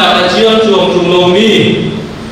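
Speech only: a man speaking into a lectern microphone.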